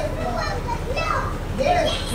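Sembrandt HT3000 soundbar with subwoofer playing music over Bluetooth: the opening of the song, a young girl's recorded voice preaching, over a low steady rumble.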